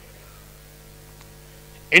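Steady low electrical mains hum on the podium microphone feed during a pause in speech, with a faint click about a second in; a man's voice starts again right at the end.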